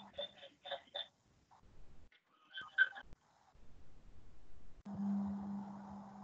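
Faint, indistinct voice in short snatches, then a steady low electrical hum with hiss that comes on abruptly about five seconds in: open-microphone background noise on a video call.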